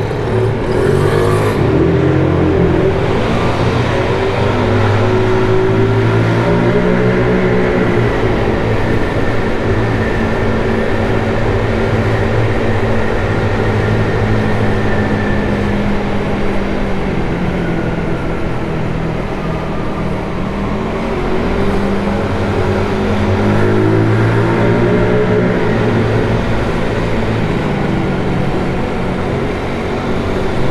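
GY6 scooter's single-cylinder four-stroke engine pulling away from a standstill, rising in pitch over the first few seconds, then running steadily at low speed. About two-thirds of the way through it eases off, then picks up again.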